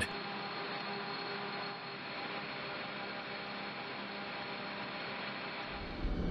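Steady mechanical hum and hiss with faint held tones underneath, even in level throughout.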